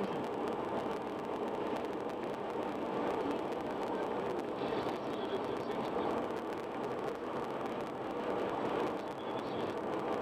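A car travelling at highway speed, with steady road and tyre noise.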